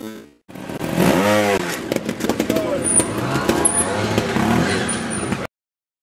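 Trial motorcycle engine revved in a quick blip, its pitch rising and falling about a second in, with voices of people around it; the sound cuts off suddenly near the end.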